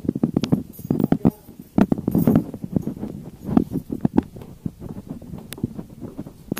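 Handheld camera handling noise and footsteps on a hard tiled floor: a run of irregular close knocks and taps with some rustling.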